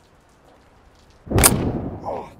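A single loud gunshot a little over a second in: a sharp crack with a low rumbling tail that fades over about half a second.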